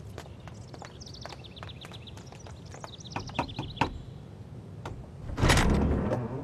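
Footsteps on stone paving, with birds chirping in quick repeated notes for a few seconds. Near the end comes a loud heavy clunk at a wooden temple gate, the loudest sound here.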